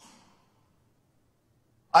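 A short, faint breath out close to a handheld microphone, fading within about a third of a second, then silence.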